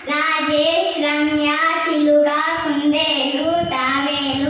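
A young girl singing into a handheld microphone: a chant-like tune of held notes, phrase after phrase with short breaths between.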